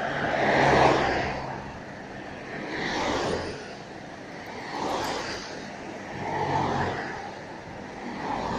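Road traffic: four cars passing one after another, each a swell of tyre and engine noise that rises and fades, the loudest about a second in.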